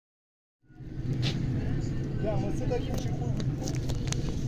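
Boat engine running with a steady low hum, starting just over half a second in, with faint voices and a few light knocks over it.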